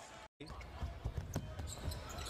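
Basketball being dribbled on a hardwood court, repeated low thumps over steady arena crowd noise, with a few sharp squeaks or clicks. The sound drops out briefly just after the start at an edit cut.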